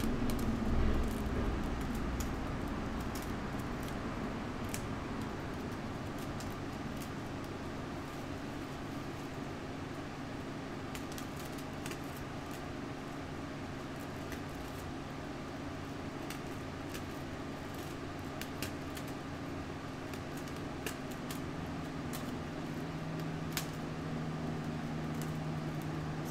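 Scissors snipping through a sheet of press-and-seal plastic wrap, heard as scattered faint clicks and snips over a steady low room hum from a fan or air conditioning.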